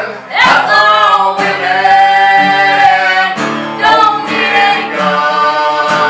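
Live singing over a strummed acoustic guitar, with held sung notes.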